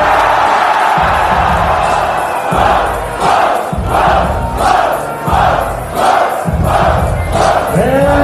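Rap-battle crowd shouting in reaction to a rhyme over the hip-hop beat. From about two and a half seconds in, the shouts fall into a rhythmic chant of about two a second.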